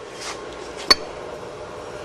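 A single short, sharp clink about a second in, over low steady background noise.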